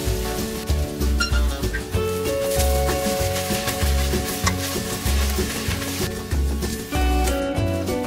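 Leek, root vegetables and rice sizzling as they sauté in oil in a stainless steel pot, stirred with a wooden spoon. Background music with a steady beat plays over it.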